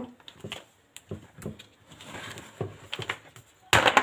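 Snap-on plastic lid being prised off a plastic tub: small clicks and rustles as fingers work round the rim, then a loud snapping clatter near the end as the lid comes free.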